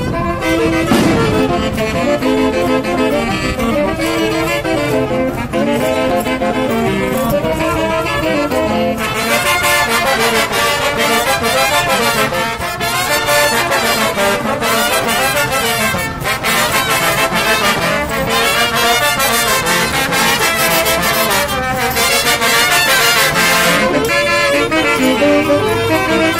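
Festive dance music with brass instruments carrying the tune; about nine seconds in a busy beat of percussion strokes joins and runs on.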